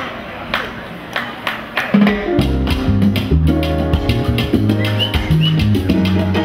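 A live salsa band starting a tune: a few sharp percussive clicks count it in, then about two seconds in the full band comes in with a driving bass line, keyboard and Latin percussion.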